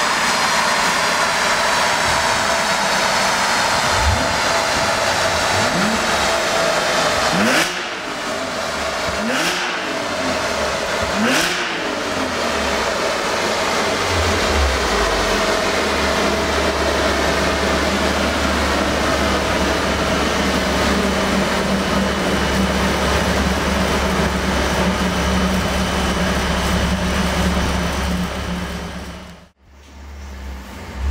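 Stage 3-tuned Audi S4 B8 supercharged 3.0 TFSI V6 at full throttle on a chassis dynamometer, its pitch climbing and dropping at gear shifts about every two seconds. From about halfway through, the engine and rollers wind down in a long, slowly falling whine over a low steady drone, and the sound cuts out just before the end.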